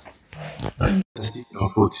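Pigs vocalising as a boar mounts a sow in natural mating, cut off suddenly about a second in, after which a man's voice speaks.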